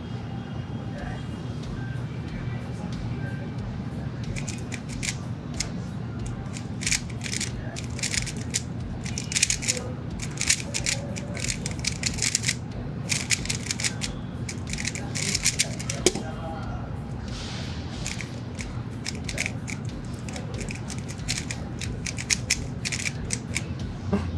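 Rapid clusters of plastic clicking and clacking from a HuaMeng YS3M MagLev Ballcore 3x3 speedcube being turned fast in a timed solve. The turning starts a few seconds in and runs for about twelve seconds in quick bursts, over a steady low hum.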